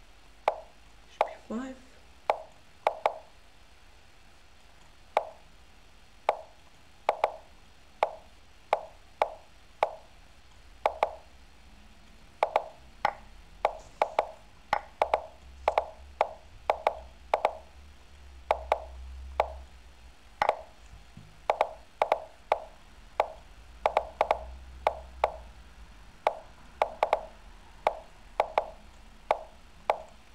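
Online chess move sounds from lichess: a rapid series of short wooden plops, roughly two a second, one for each move as both players move at bullet speed.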